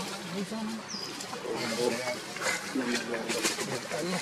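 A dove cooing low in the background, with a short high bird chirp about a second in, over faint voices.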